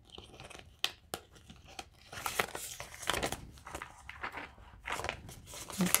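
Polymer banknotes and a clear plastic cash envelope crinkling and rustling as they are handled, with a couple of sharp clicks about a second in and denser crinkling from about two seconds on.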